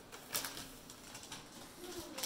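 Sheets of paper being handled and lifted off a wooden table, giving a few faint crackles and rustles.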